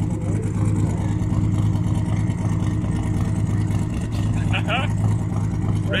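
Twin-turbo Buick Skylark drag car's engine idling steadily, a low, even drone that holds its pitch without revving.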